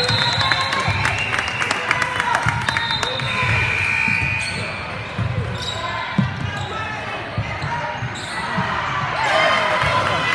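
A basketball being dribbled on a hardwood gym floor, with irregular thumps, and sneakers squeaking now and then, loudest around the middle. Everything echoes in the large gym.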